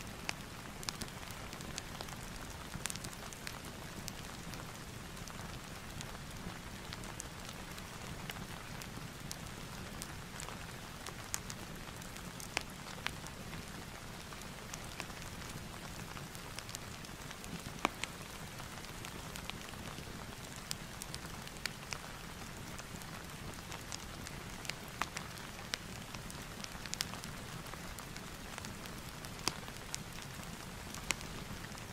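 Steady rain ambience mixed with a crackling fireplace: an even hiss of rain with scattered sharp crackles every second or two.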